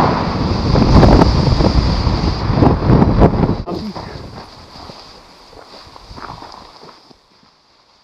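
Wind rushing and buffeting over the microphone during a paraglider flight, loud for the first three and a half seconds; after a cut it gives way to much quieter wind that fades away toward the end.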